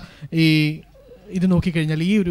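A woman's voice over a microphone: a short held vowel on one steady pitch, a brief pause, then more words.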